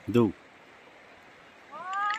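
Two short wordless vocal sounds: a brief loud cry falling in pitch just after the start, then a rising 'ooh'-like call near the end. Under them runs a steady rush of flowing river water.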